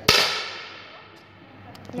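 A single shot from a precision match air rifle: a sharp crack about a tenth of a second in, followed by a ringing tail that fades away over about a second and a half.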